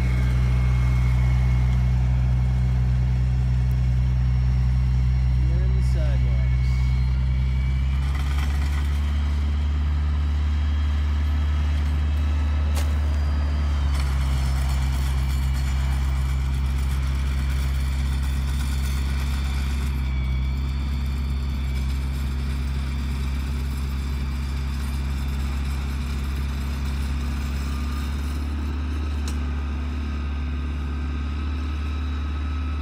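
Sidewalk tractor's engine running steadily under load as its front-mounted snowblower throws snow: a low, even drone that shifts slightly in pitch about eight seconds in and again near fourteen seconds, fading a little toward the end as the machine moves off.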